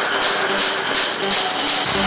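Industrial techno track in a breakdown with the kick and bass cut out. Fast, even hi-hat-like ticks run over short synth notes, and the ticks stop just before the end as the low end returns.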